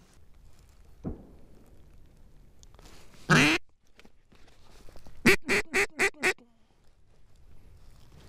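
Mallard-type duck call blown close by: one drawn-out quack, then a quick run of about six loud quacks, each one raspy.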